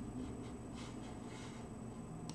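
Quiet room tone: a low steady hum with two faint, soft rustles partway through.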